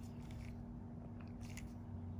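Steady low hum with a few faint, short clicks and crackles scattered through it.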